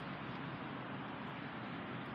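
Steady background hiss with no distinct sounds: the even ambient noise of an open lot.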